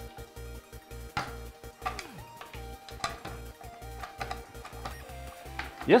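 A hand-held can opener being worked through a tin can's lid, giving a few sharp metal clicks. Background music with a steady low beat plays under it.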